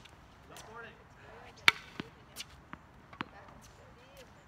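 Tennis ball struck by rackets and bouncing on a hard court during a rally: one sharp crack about a second and a half in, then several lighter pops over the next second and a half.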